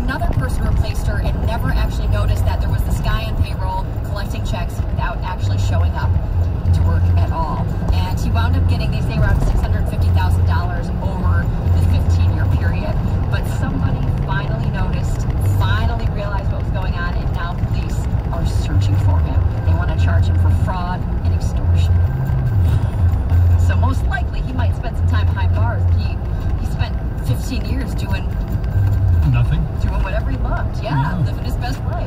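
Car radio playing music with a singing voice and a pulsing bass, heard inside the cabin over the low hum of the car at highway speed.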